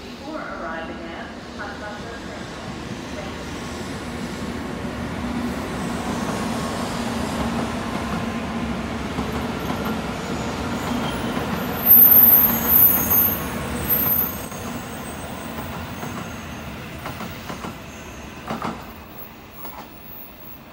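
N700-series Shinkansen train pulling out and accelerating past: a steady low hum under a building rush of the cars rolling by, with brief high-pitched squeals about twelve seconds in, the loudest moment, then fading as the train draws away.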